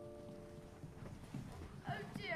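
The last sung chord of a children's choir fading away in the hall, then faint stage and audience noise. Near the end a high child's voice starts, with a swooping pitch.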